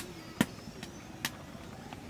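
Steel slotted spoon clinking against a metal karahi as a fried luchi is lifted out of the oil: a sharp click about half a second in and a fainter one a little after a second.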